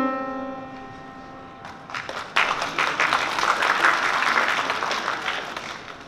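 Grand piano's last note ringing out and fading, then an audience clapping, starting about two seconds in and stopping near the end.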